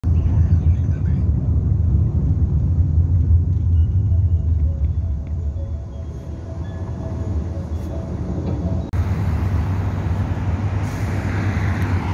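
Road traffic on a busy boulevard: a steady low rumble, joined about nine seconds in by a broader rush as traffic passes.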